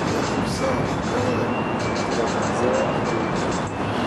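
Steady rumble of passing street traffic, with faint music over it.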